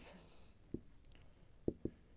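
Marker pen writing on a whiteboard: faint strokes with three light ticks of the tip on the board.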